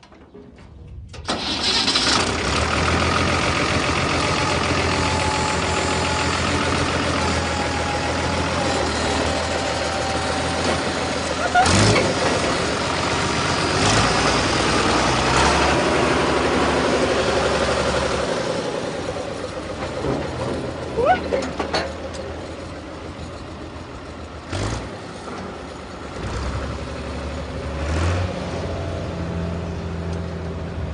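A farm tractor's diesel engine catches abruptly about a second in and runs steadily, with a few sharp metallic knocks along the way; it gets quieter in the second half as the tractor pulls away.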